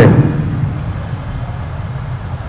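Steady low background rumble with a faint hiss, with no pitch or rhythm.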